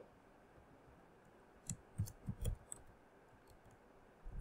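Faint computer keyboard keystrokes: a quick run of about five taps, starting a little before halfway through, as a few characters are typed.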